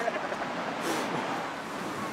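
Steady beach background noise of wind and surf, with faint voices in the middle and a short hiss about a second in.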